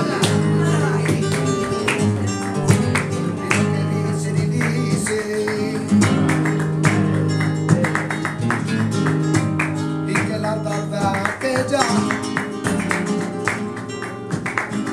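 Flamenco guitar playing, with plucked notes and frequent sharp strummed strokes.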